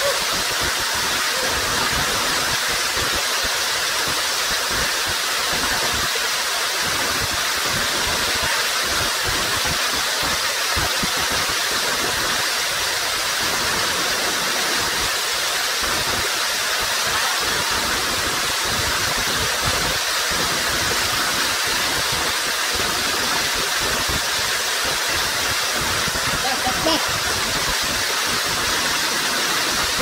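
Steady rush of a waterfall pouring into a rock pool: an even roar of water at constant loudness.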